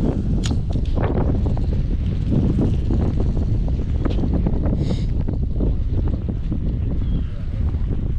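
Wind buffeting the microphone: a loud, steady low rumble, with a few brief ticks over it.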